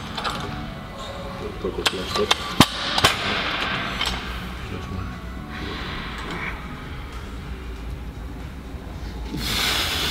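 A handful of sharp metal clanks from barbell and weight plates about two to three seconds in, over steady low gym background noise.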